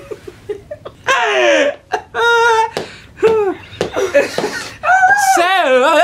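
A man singing in a high, strained voice with exaggerated wobbling vibrato. There is a falling slide about a second in, a short held note, and a long wavering note near the end, with a woman laughing.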